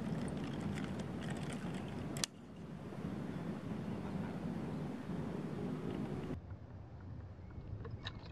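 Steady low wind rumble on the microphone, with a few light clicks from a spinning nunchaku's sticks and chain early on and a sharp clack about two seconds in. The background drops abruptly right after that clack and changes again near six seconds.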